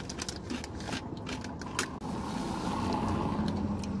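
Crinkling and clicking of plastic snack packaging being handled in a car, busiest in the first two seconds, with a low steady hum underneath from about halfway through.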